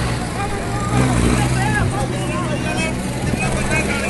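A vehicle engine running steadily as a low hum, with several people's voices talking and calling in the background.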